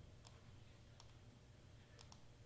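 Near silence: room tone with two faint computer mouse clicks, about a quarter second in and again at one second.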